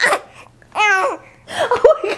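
A baby cooing and babbling: one drawn-out, high-pitched coo about a second in, falling slightly at its end, and a shorter one near the end.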